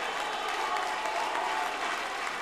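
Large audience applauding, with crowd voices mixed in, at a steady level.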